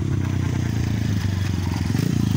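A nearby engine running steadily, a rapid low throbbing pulse.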